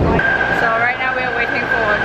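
Trolley car in an underground station giving a steady high-pitched squeal for about two seconds, starting just after the beginning, with voices around it.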